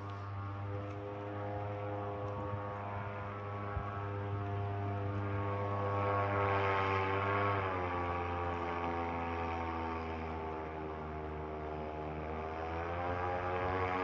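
Electric airboat's propeller heard from a distance: a steady drone made of many evenly spaced tones. It dips to a lower pitch about halfway through and creeps back up near the end.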